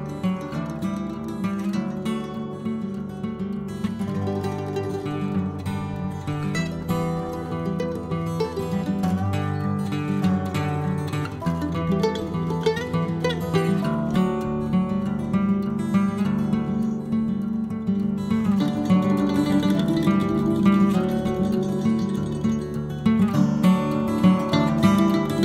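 Background music led by acoustic guitar, plucked and strummed.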